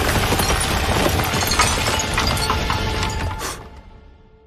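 Animated battle soundtrack: music mixed with mechanical clattering and crashing sound effects, which cut off sharply about three and a half seconds in and fade away.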